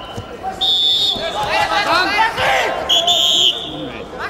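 Two short, shrill blasts of a referee's whistle, about a second in and again about three seconds in, stopping the wrestling, with shouting voices from the crowd in between.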